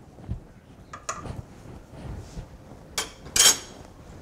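Metal spoon stirring stew in a stainless steel pot: a few faint clinks, then two louder scrapes of the spoon against the pot near the end.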